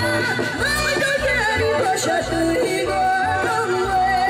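A woman singing into a microphone, her voice carried over amplified backing music with a recurring bass pulse.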